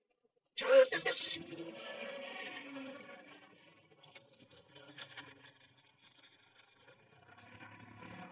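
Car engine of a Mercedes-Benz GLK SUV starting with a sudden loud burst about half a second in, then running more quietly and rising again near the end as the car pulls away.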